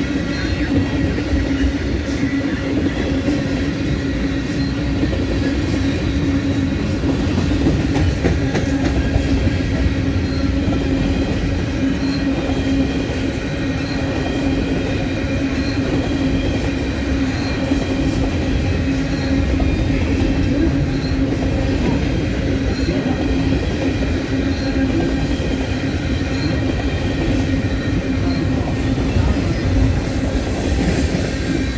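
Freight cars of a long mixed train (tank cars, covered hoppers, gondolas and autoracks) rolling slowly past close by: a steady rumble of steel wheels on rail with a constant low hum.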